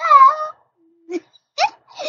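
A young girl's high-pitched playful squeals: one loud, wavering squeal at the start, then two short squeaks, the last one rising quickly in pitch.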